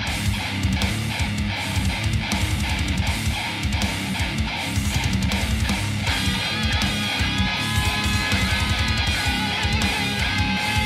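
Heavy metal music on distorted electric guitar: a driving, chugging riff, joined about six seconds in by a lead guitar line of high held notes with wavering pitch.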